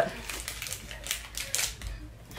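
Faint, scattered light clicks and rustles of small objects being handled by hand.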